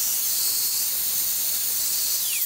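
Small handheld vacuum cleaner running with a steady high-pitched hiss and whine, then switched off near the end, its whine falling in pitch as the motor winds down.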